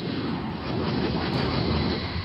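A steady rushing, rumbling noise that holds an even level throughout, with no distinct strikes or tones.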